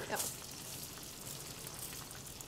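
Sweet peppers, onion and garlic sizzling gently in olive oil in a frying pan on low heat: a faint, steady crackle.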